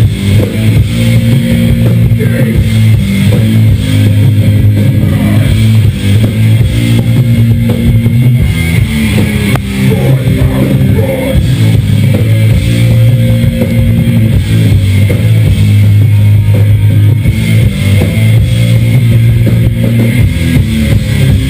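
Live rock band playing at full volume: electric guitar, bass guitar and drum kit, with long held low chords, recorded loud from within the crowd.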